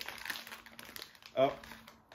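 Crinkly foil blind bag being handled and pulled open in the hands, giving a rapid run of crackles that are thickest in the first second.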